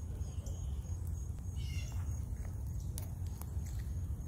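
Outdoor park ambience: a steady low rumble on the phone microphone, a faint steady high thin tone like an insect, and one brief high animal call about one and a half seconds in.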